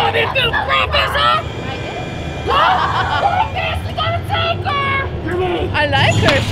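Indistinct voices talking and calling out, over a steady low background hum.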